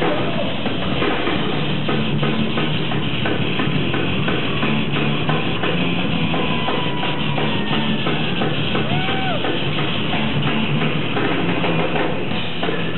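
Thrash metal band playing live: distorted electric guitars and a drum kit pounding out a fast, steady beat.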